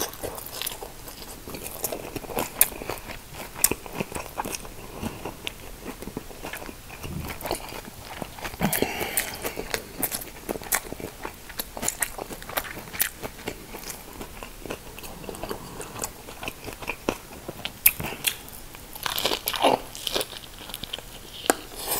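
Close-miked biting and chewing of fresh rice-paper spring rolls filled with shrimp and lettuce: an irregular stream of sharp mouth clicks and crunches.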